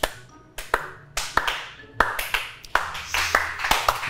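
A smattering of applause: a few people clapping, at first sparse single claps and then denser overlapping claps from about halfway through.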